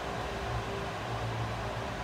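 Steady low hum with a soft even hiss: room background noise, with no distinct knocks or clicks.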